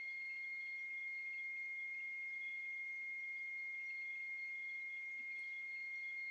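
A steady high-pitched whine holding one unchanging pitch, over faint hiss.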